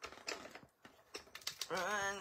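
Clear acrylic cutting plates being handled and slid onto the platform of a manual die-cutting machine: a scatter of light plastic clicks and taps.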